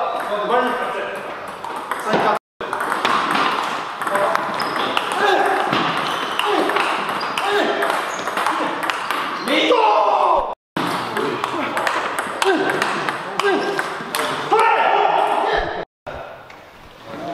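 Table tennis balls clicking back and forth off bats and table tops in quick rallies, several tables playing at once in a hard-walled hall, with voices over them. The sound cuts out briefly twice.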